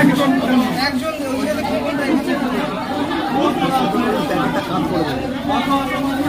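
Several people talking over one another: steady indistinct chatter with no single clear voice.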